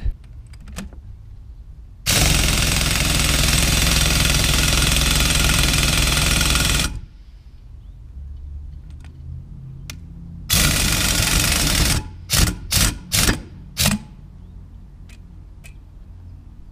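Pneumatic impact wrench hammering as it spins the screw of a diecast molding press to open and close it. It runs first in one long burst of about five seconds, then a run of about a second and a half, then four short bursts.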